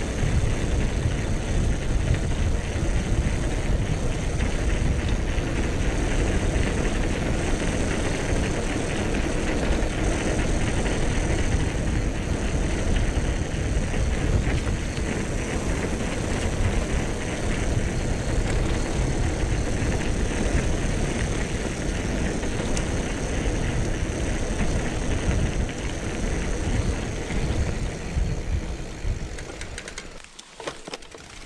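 Mountain bike rolling fast downhill on a concrete lane: steady wind rush over the helmet camera's microphone mixed with the rumble of the knobby tyres on the road surface, easing a little near the end.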